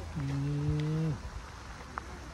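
A man's voice holding a low hum on one steady pitch for about a second, dropping slightly as it ends.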